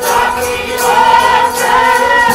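Sikh kirtan: a group of men singing a shabad together to a harmonium, over a light, regular percussion beat of about three strokes a second.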